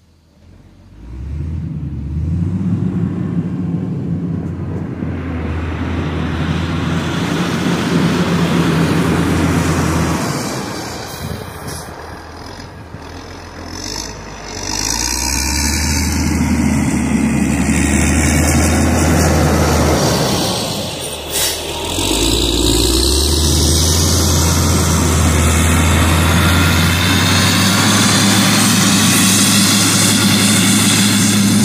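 Caterpillar 120K motor grader's diesel engine working under load as the blade pushes soil into a pipe trench. It comes in about a second in, drops back partway through, then swells again and runs loud and steady near the end as the machine passes close.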